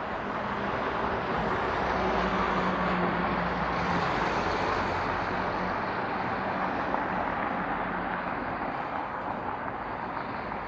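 Street traffic: the tyre and engine noise of a passing vehicle, swelling about a second in, loudest for a few seconds, then easing back to a steady traffic hum.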